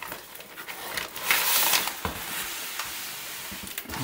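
Crumpled newspaper packing rustling as hands dig through a cardboard shipping box, with scattered clicks and a louder patch of rustling about a second and a half in.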